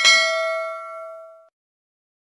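A bell-like 'ding' sound effect for a notification bell icon being clicked, struck once and ringing out, fading away within about a second and a half.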